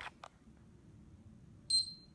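A Polar digital bathroom scale giving one short, high beep near the end as its weight reading settles.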